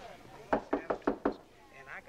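Knuckles knocking on a door, a quick run of about five knocks.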